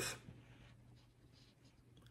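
Faint rustling of a printed paper sheet being handled, over a low steady hum.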